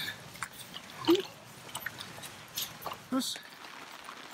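Hiking boots squelching and sucking in deep, wet bog mud, a series of irregular wet smacks and clicks as a trekker wades through, the loudest about a second in.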